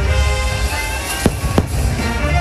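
Aerial firework shells bursting, with two sharp bangs about a second and a half in, over loud show music.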